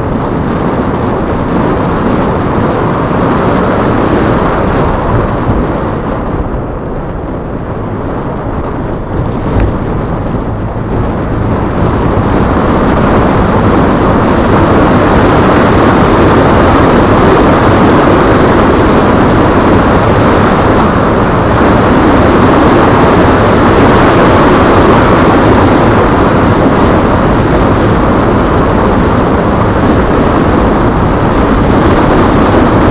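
Steady rumble of a car driving slowly, heard from a dashcam inside it: engine and tyre noise. It grows louder about twelve seconds in, as the tyres run over cobblestones.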